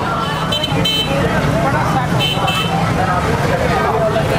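Busy street-market din: background voices over running motorcycle and traffic engines, with a vehicle horn tooting briefly twice, first about half a second in and again just past two seconds.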